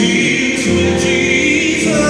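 Live gospel music: a man sings a held, wavering note over sustained chords from an electronic keyboard.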